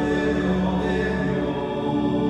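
Choral singing of sacred music with long, held notes.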